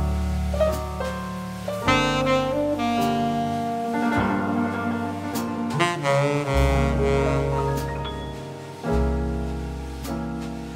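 Jazz band playing an instrumental passage: a saxophone carries the melody over piano, bass and drums.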